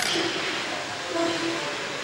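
Steady, loud background din of a kitchen, with a sharp clink of a metal fork against a steel food tray at the start.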